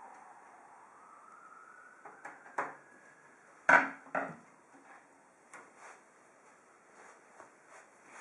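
Scattered light clicks and knocks of a Phillips screwdriver and screws being handled at the steel back panel of a PC case. The loudest knock comes about three and a half seconds in, as the screwdriver is set down on the wooden desk.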